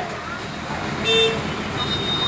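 A short, high vehicle-horn toot about a second in, over a steady outdoor background hum.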